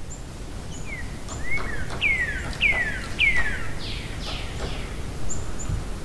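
A bird calling: a run of about seven whistled notes, each sliding down in pitch, roughly two a second, with short high chirps at the start and near the end. A low steady rumble lies underneath.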